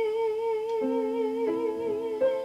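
Soprano voice holding one long note with a steady vibrato, accompanied by an upright piano that plays a new chord beneath it just under a second in and again about halfway through.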